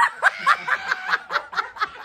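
A woman laughing hard in a fit of giggles, a run of quick pulses about five a second.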